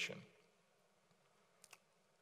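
Near silence, room tone, after the last syllable of a word trails off at the start, with two faint, quick clicks close together near the end.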